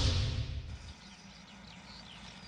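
A TV news transition sound effect: a low rumbling swoosh that fades away over the first second. It is followed by faint outdoor ambience with birds chirping.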